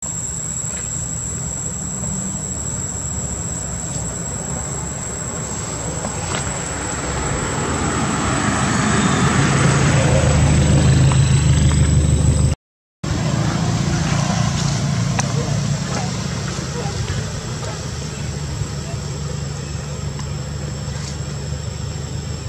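A motor vehicle's engine running close by, its low hum growing louder toward the middle, over a steady outdoor background. It cuts off abruptly at an edit, and a quieter, similar background follows.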